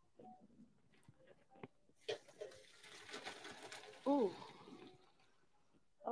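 Faint hiss of hot water being poured off a pot of boiled sweet potatoes, with a few light clicks and knocks of the pot before it. A short voice sound gliding down in pitch about four seconds in.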